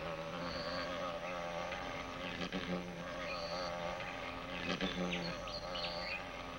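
Male thynnid wasp's wings buzzing steadily, with a slightly wavering pitch, as it grips the hammer orchid's wasp-shaped lip in a mating attempt.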